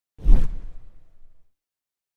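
A whoosh transition sound effect with a deep low thud, starting a fifth of a second in and dying away within about a second.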